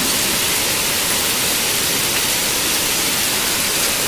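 Heavy downpour of rain mixed with hail falling on streets, cars and grass, a steady dense hiss with no let-up.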